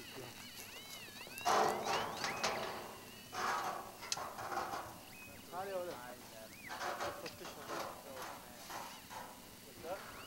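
Indistinct voices of men talking, not close to the microphone, with bursts of rustling, scraping noise, the loudest about a second and a half in.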